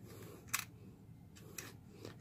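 Two faint plastic clicks, about half a second in and again near the end, as a small 1S LiPo battery is pulled out of a toy quadcopter's plastic battery bay by its wires.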